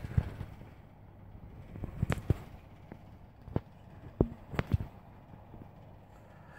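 Handling noise from a handheld camera: about five light, sharp clicks and taps spread through the middle, over quiet room tone.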